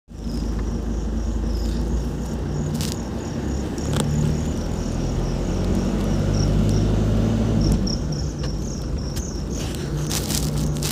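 A vehicle's engine running as it drives along, a steady low hum that shifts a little in pitch, with crickets giving rapid, high, repeated chirps over it.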